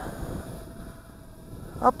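Potensic Atom SE mini quadcopter's propellers buzzing faintly as the drone climbs away, one thin steady tone under breeze on the microphone. A man's voice comes in at the very end.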